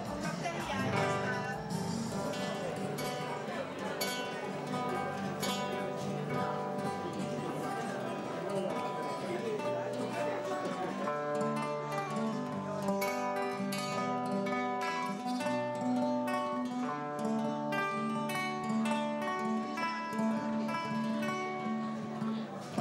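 Nylon-string classical guitar playing an instrumental song intro, picked notes at first, settling into a steadier chord pattern about halfway through.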